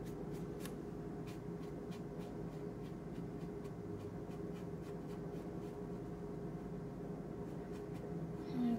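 Faint, light clicks and scratches, a few a second, of a watercolor paintbrush being worked against paper and palette, over a steady low hum.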